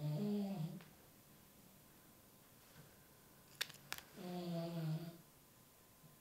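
A dog snoring: two drawn-out snores, one right at the start and one about four seconds in. A couple of light clicks come just before the second snore.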